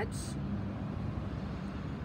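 A steady low mechanical hum with a few constant low tones, like an idling vehicle engine, holding level throughout.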